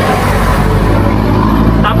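A motor vehicle going past on the street: a steady low engine rumble with road noise.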